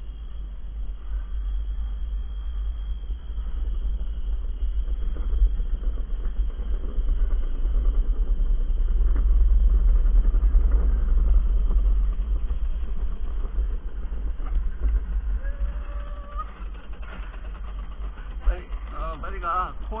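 Gravity-driven luge cart rolling down a concrete track: a steady low rumble of wheels and wind on the cart-mounted microphone, growing louder toward the middle as the cart picks up speed, then easing.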